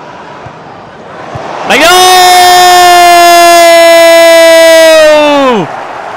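Stadium crowd noise, then a TV commentator's goal call: about two seconds in he starts a loud shout of "Đánh đầu!" ("header!") and holds it on one pitch for nearly four seconds, letting it drop off just before the end.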